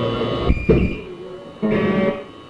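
Live electric guitar in a lo-fi audience recording: two quick strums about half a second in, then a chord ringing briefly near the end, over steady amplifier hum.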